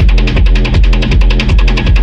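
Hard techno in a DJ mix: a heavy kick drum about two and a half beats a second under quick hi-hat ticks and a sustained low bass.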